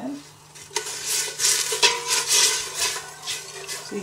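A spoon stirring broth in a stainless steel stockpot, scraping and clinking against the pot's bottom and sides. The stirring starts about a second in and goes on in quick, uneven strokes.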